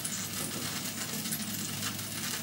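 Chicken pot stickers frying in a skillet: a steady sizzle with a few light crackles.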